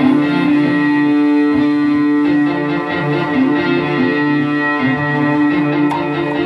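Live band playing an instrumental passage led by electric guitar, with drums and keyboard underneath, loud and steady through a stage PA.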